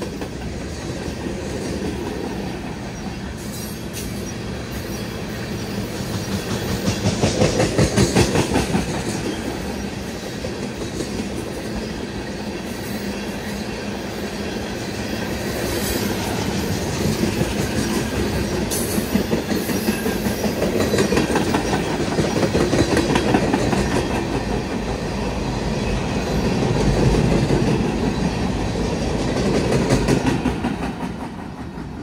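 Freight train of open-top gondola cars rolling past, steel wheels clattering rhythmically over the rail joints, with the sound swelling and easing as cars go by and a few sharper clanks.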